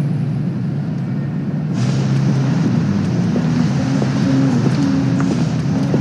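Night-time city street ambience: a steady low rumble of traffic, its sound changing abruptly about two seconds in, with a few low sustained notes underneath.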